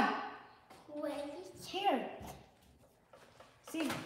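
Short bursts of indistinct speech, with a quiet gap of about a second and a half in the middle and speech starting again near the end.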